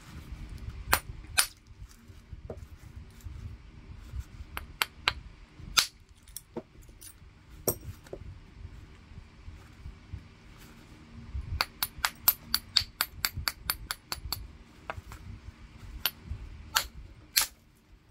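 Copper-headed bopper striking a heat-treated Mississippi gravel cobble in flintknapping: sharp clicking strikes scattered throughout, with a quick run of about a dozen light taps in the middle and two harder strikes near the end.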